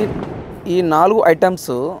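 A sudden loud thump right at the start that dies away within about half a second, followed by a person talking.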